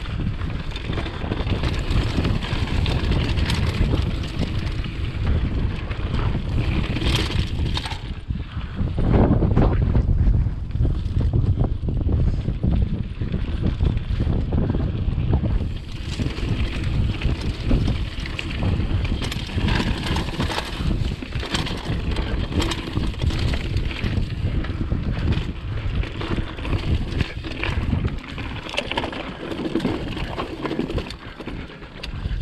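Mountain bike descending rough, rocky dirt singletrack: constant wind buffeting on the action camera's microphone, mixed with the clatter and rattle of the bike and tyres over rocks and ruts. The wind rumble grows heavier about nine seconds in.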